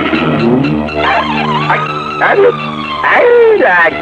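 Loud, drawn-out men's voices, held notes with the pitch sliding up and down in long arcs.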